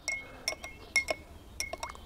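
Metal spoon clinking against the inside of a drinking glass while stirring a drink, about half a dozen light, irregular clinks.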